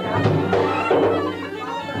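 Traditional Yemeni wedding dance music: a reedy wind instrument playing a sustained, droning melody over regular drumbeats.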